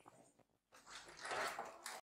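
A young girl whimpering in a short breathy sob, hurt after being stepped on.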